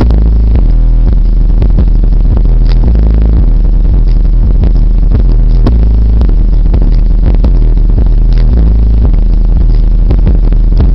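A JL Audio car subwoofer pounding out the deep bass line of a rap song, so loud that the recording is overloaded. The steady, booming low notes change pitch in steps and come through distorted and crackling.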